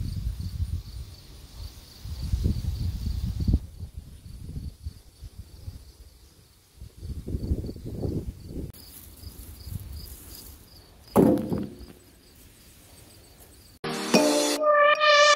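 Outdoor summer ambience: insects chirping in a steady, evenly spaced high-pitched series, with wind buffeting the phone's microphone in low gusts. A short, louder sound comes about eleven seconds in.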